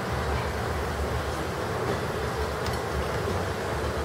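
Steady low rumble and hiss, with a few faint clicks.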